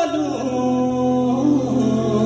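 Male vocalist singing into a handheld microphone, holding long notes and sliding between them, over a steady low instrumental backing.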